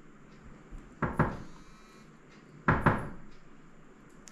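Knuckles knocking on a wooden panel door: two quick double knocks, about a second and a half apart.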